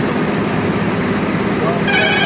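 Steady running noise of a moving passenger train heard from inside the carriage, with a horn starting to sound near the end.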